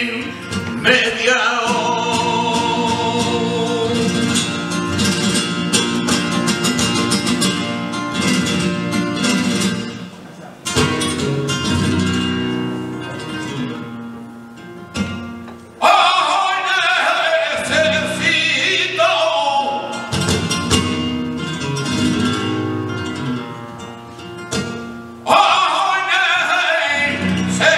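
Flamenco cante: a male singer's melismatic voice over a flamenco guitar accompaniment. The voice drops out for a few seconds partway through, leaving the guitar alone, then comes back in with new phrases.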